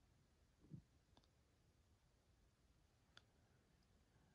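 Near silence, with a soft low bump under a second in and two faint clicks later on: stylus and fingertip taps on a tablet's glass touchscreen.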